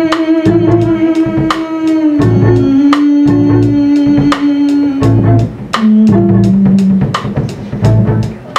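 Jazz band of violin, upright bass and drum kit playing. A long, held melody line steps down in pitch over plucked bass notes and a steady beat of drum and cymbal strokes about twice a second.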